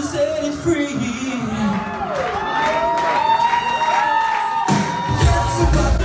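Live 80s-style pop music with singing, heard loud in a small club. Long gliding high tones hold over a sparse backing, and the bass and drums come back in about five seconds in.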